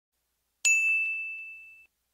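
A single high bell-like ding that starts sharply about half a second in and rings out, fading, until it is cut off abruptly, with a few faint ticks under it.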